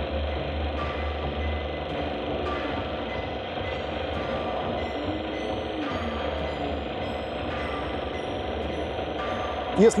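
Electronic synthesizer sounds: a steady low pulsing bass under a noisy hiss, with scattered short bleeps at different pitches and a brief arching glide about halfway through.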